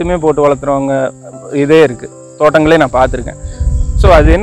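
Speech with a steady, unbroken high-pitched insect trill behind it, typical of crickets in a field.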